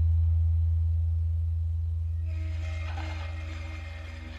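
Live electronic ambient music: a deep, steady drone, slowly fading. A little past halfway, higher held tones and a brighter shimmering texture come in over it.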